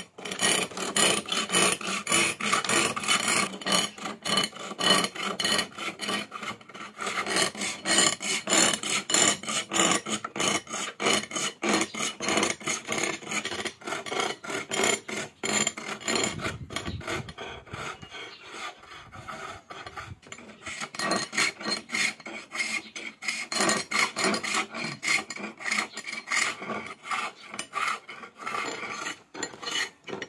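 Steel chisel shaving a wooden masher turning on a traditional bow lathe: rhythmic scraping that pulses with each back-and-forth stroke of the bow, easing off for a few seconds about halfway.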